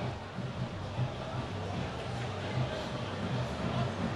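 Steady crowd noise of a football stadium carried on a TV match broadcast, with no single event standing out.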